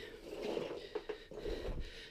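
Faint breathing close to the microphone, with light rustling.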